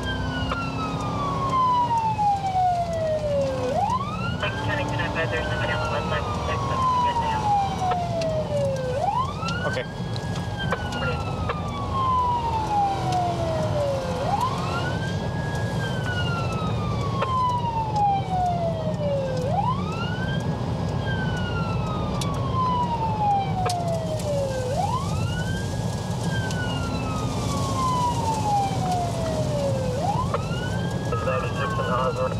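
Police car siren on wail, heard from inside the pursuing patrol car: each cycle rises quickly and then falls slowly, repeating about every five seconds. A steady rumble of engine and road noise runs underneath.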